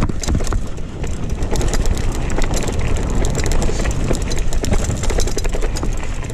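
Mountain bike rolling fast over a rough dirt trail: continuous wind buffeting on the microphone and a dense run of rattling clicks and knocks from the tyres and bike over the bumpy ground.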